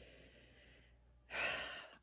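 A woman's audible breathing: a faint exhale, then a louder half-second intake of breath about a second and a half in.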